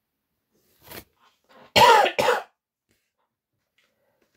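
A person coughing: a faint short sound about a second in, then two loud coughs in quick succession about two seconds in, the first the louder.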